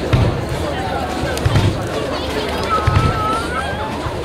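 Deep drum thuds at uneven intervals, about every second or so, under the voices of an outdoor crowd, with a thin wavering tone near the end.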